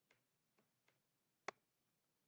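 A few faint computer keyboard keystrokes over near silence, with one sharper key click about a second and a half in.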